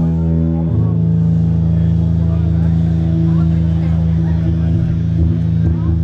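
Live rock band's amplified instruments holding a loud, steady, low droning chord with no drumbeat. The lowest note shifts up slightly about a second in.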